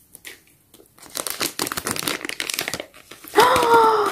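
Thin plastic blind-bag packaging crinkling and rustling as it is torn open and handled by hand, in dense irregular crackles for about two seconds. Near the end a short, held excited vocal "ooh".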